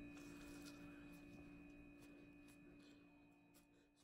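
Near silence: a faint steady hum of two fixed tones, one low and one high, fading out toward the end.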